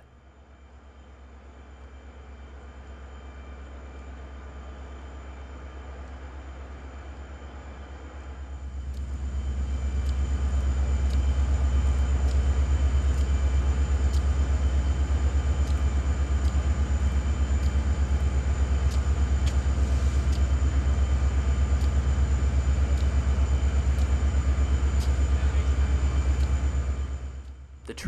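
Diesel locomotives of a work train running at low throttle while the train crawls forward at about 1 mph: a steady low engine rumble. It grows louder about nine seconds in, stays loud, and fades away just before the end.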